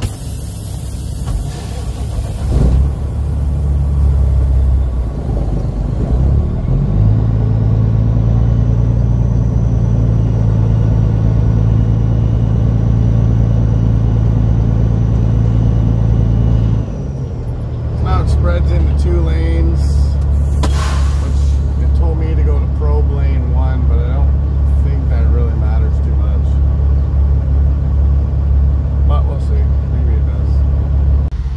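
Peterbilt semi's diesel engine running at low speed, heard from inside the cab as a steady low drone. It picks up revs about seven seconds in, drops away briefly around seventeen seconds and settles back at a lower pitch. A short hiss of air comes about twenty-one seconds in.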